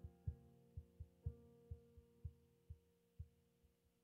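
Grand piano chords fading out at the end of a song, with a soft chord played about a second in. Under it runs a faint, even low thump about twice a second.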